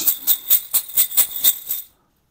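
Numbered draw balls rattling together in a cloth bag as it is shaken, about four shakes a second, cutting off suddenly near the end.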